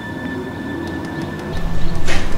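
A steady low drone with a faint held high tone over it, swelling a little near the end.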